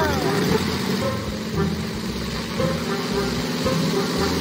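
Cartoon propeller-plane engine sound effect: a steady drone as the small plane flies off.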